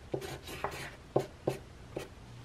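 Black marker drawing on a sheet of paper, with a handful of short, separate strokes.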